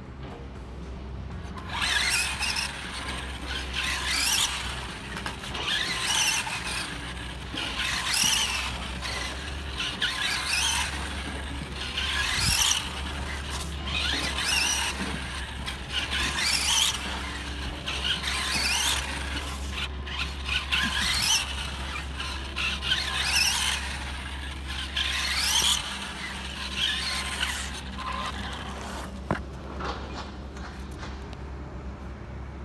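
Electric Tamiya Super Storm Dragon RC buggy driven hard, its motor, gears and tyres giving a high-pitched whine and squeal that surges about every two seconds as it accelerates, brakes and turns.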